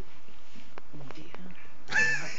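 A lull with a few faint, short, low vocal murmurs about halfway through and several soft clicks.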